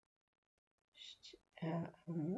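Near silence, then about a second in a person's voice starts speaking quietly.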